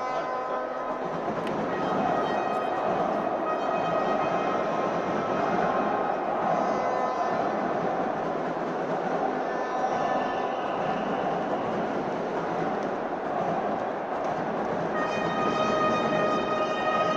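Steady din of an arena crowd during a break in play, with sustained horn-like tones held over it.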